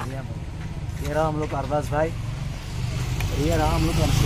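Men's voices talking over a steady low rumble of street traffic.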